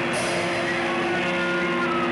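Live band playing loud: a sustained, distorted electric guitar drone with a cymbal hit just after the start and a high feedback tone sliding downward near the end.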